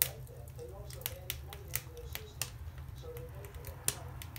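A mink chewing food: a string of sharp, irregular crunching clicks, about ten in four seconds.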